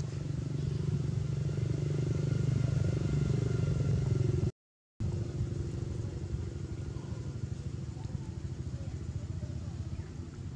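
A steady low motor hum, like an engine idling, that cuts out completely for about half a second midway and comes back a little quieter.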